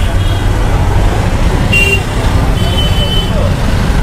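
Street ambience of road traffic, with a heavy low rumble of wind on the microphone and a couple of short high tones about halfway through.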